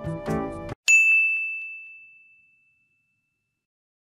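Background music cuts off abruptly, then a single bright bell-like ding sounds about a second in and rings out, fading over about a second and a half into silence.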